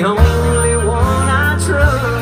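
Live country band playing an instrumental passage between sung lines: fiddle bowing a sliding melody over acoustic guitar and bass, with a regular low drum beat.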